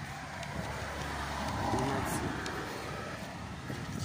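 A car passing by: its tyre and engine noise swells to a peak about halfway through and then fades.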